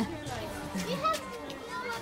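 Several children's voices chattering indistinctly at a front doorstep.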